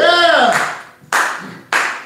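A man's short whooping "ooh", rising then falling in pitch, followed by three slow, evenly spaced hand claps about 0.6 seconds apart.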